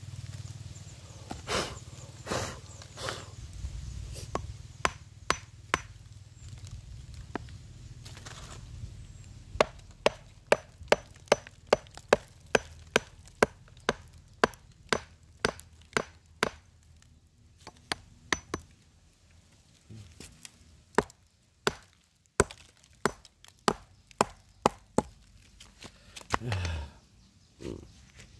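Small claw hammer striking a block of rock, chipping pieces off: a few scattered blows, then fast runs of sharp knocks at about three a second, with a pause of a few seconds in the middle.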